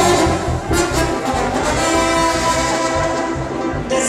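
Banda music: a brass section playing held notes over a steady bass beat.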